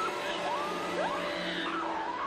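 Horror film soundtrack: eerie music with high wails that slide up and down in pitch over a steady low drone.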